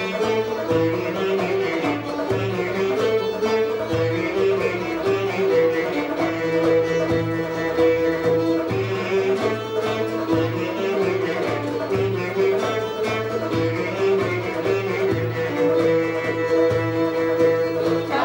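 Greek folk ensemble playing an instrumental passage: oud, violin and clarinet carrying the melody over a steady beat on a frame drum.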